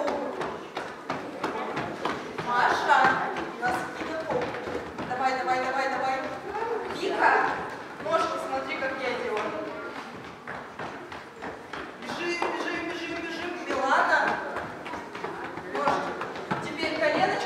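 Small children running on a wooden floor, many quick light footfalls tapping and thudding, with high children's voices calling out over them every few seconds.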